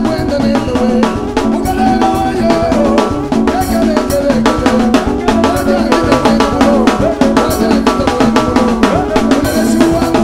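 Live band playing upbeat dance music, with a drum kit beating steadily under keyboards and other instruments.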